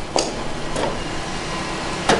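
Océ PlotWave 300 wide-format printer running with a steady mechanical whir as it feeds the freshly loaded roll and cuts off a first strip of paper.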